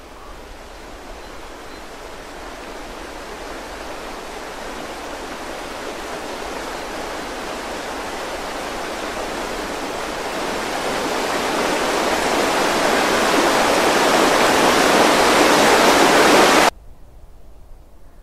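A rushing noise with no pitch or beat swells steadily louder for about sixteen seconds, then cuts off abruptly shortly before the end.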